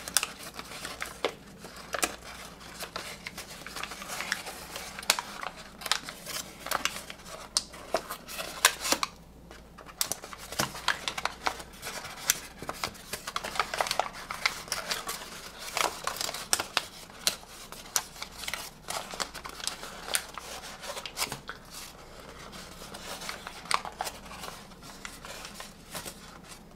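A large sheet of origami paper being creased and pushed into a folded tessellation by hand: irregular crisp crinkles and small clicks of the paper, with a short lull about nine seconds in.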